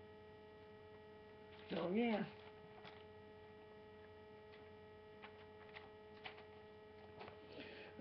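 A faint, steady electrical hum: one constant tone with evenly spaced overtones, with a few soft clicks in the second half.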